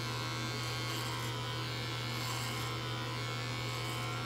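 Electric beard trimmer running with a steady buzz as it is worked through a full beard.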